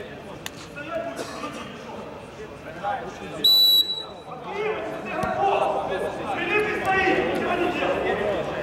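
Referee's whistle blown once for the kick-off after a goal: a short, steady, shrill note about three and a half seconds in.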